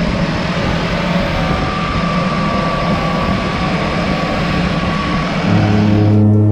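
Turboprop airplane engine and propeller running close by: a loud, steady, dense noise with a faint high whine. Steady music tones come in near the end.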